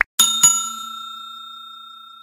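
Subscribe-button sound effect: a quick click or two, then a bell ding that rings on and slowly fades.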